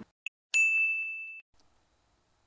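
A single bright bell-like ding, struck suddenly about half a second in and ringing on one clear tone for about a second before it stops, after a faint short tick.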